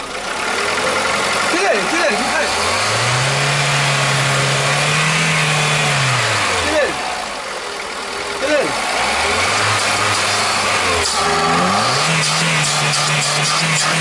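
Car petrol engine running with the intake hose off its freshly cleaned throttle body. It revs up and settles back three times, rising about two seconds in, near the middle and toward the end, over a steady hiss of air drawn into the open throttle body.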